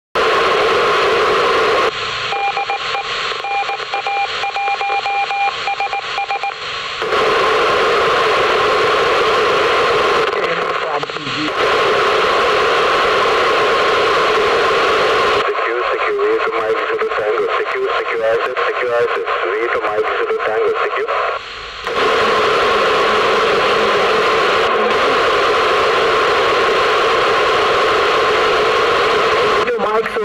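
Icom IC-2730A FM transceiver with its squelch open, receiving a Space Station pass: steady loud hiss throughout. About two seconds in a keyed Morse tone comes through the hiss for a few seconds, the NA1SS CW beacon. Later a faint, warbling voice breaks through the noise for several seconds.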